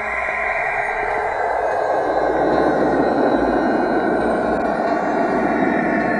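Loud, dense noise drone with no clear pitch, swelling over the first two or three seconds and then holding steady, an unsettling sound-effect texture.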